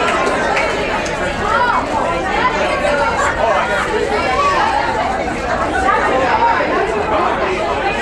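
Many people talking at once: a steady jumble of overlapping voices with no single speaker standing out.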